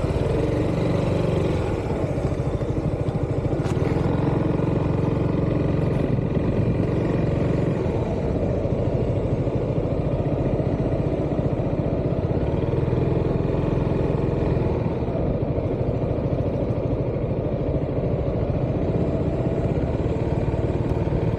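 Yamaha Xmax scooter's single-cylinder engine running steadily at low speed as the scooter pulls away and rolls slowly along, with only small swells in engine note.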